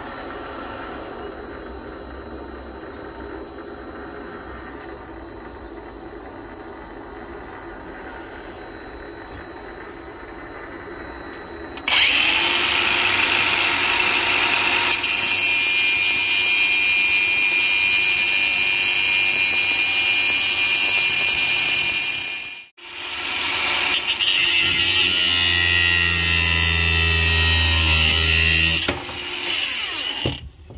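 MX-210V benchtop metal lathe running at slow speed with a steady high whine. About twelve seconds in, an angle grinder with a cut-off disc starts cutting into the spinning hardened steel gear shaft, loud and steady. The grinder cuts out briefly a little after twenty seconds, then runs again with a lower drone joining near the end as it starts to bind in the deepening cut.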